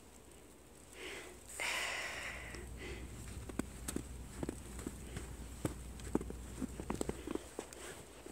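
Light crunching of footsteps in fresh snow, a scatter of small crackles, with a short breathy rush about two seconds in.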